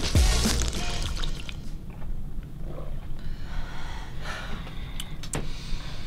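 Theme music with a heavy bass ending in the first second, then quiet room sound with soft sips from mugs, and two light knocks near the end as ceramic mugs are set down on a table.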